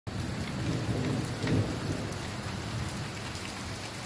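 Rain falling hard and steadily, with a low rumble of thunder through roughly the first two seconds, loudest around a second and a half in.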